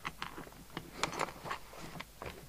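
Hands handling and smoothing the paper pages of an open magazine on a desk mat: a string of short, soft rustles and taps, the busiest about a second in.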